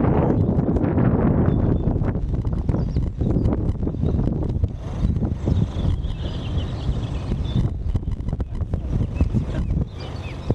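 Wind buffeting the camera microphone, a steady low rumble, with the faint hoofbeats of a horse cantering and jumping small fences.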